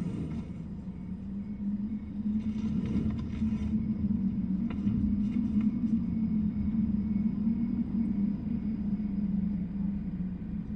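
Steady low rumble with a constant hum, unchanging throughout, and a few faint crackles in the middle.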